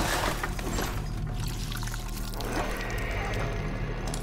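Horror film trailer sound design with no dialogue: a loud rushing noise that hits suddenly and thins out, swelling again about two and a half seconds in, over a low steady drone.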